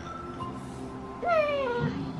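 A single short, high cry that slides down in pitch, lasting about half a second and coming a little past the middle, over soft background music.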